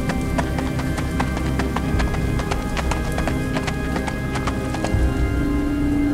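Background music: held low tones under a quick, uneven run of sharp clip-clop-like clicks, several a second.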